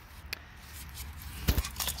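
A steel part being worked in a metal bowl of cleaning liquid: faint sloshing and small clicks, with one sharp knock about one and a half seconds in.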